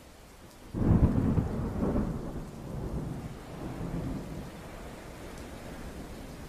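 Thunder sound effect: a sudden loud crack about a second in, then a low rumble that rolls on in swells and slowly dies away.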